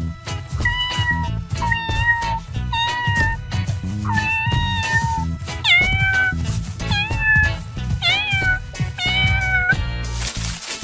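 Kitten meowing again and again, about eight high-pitched meows, a few of them falling in pitch, over background music.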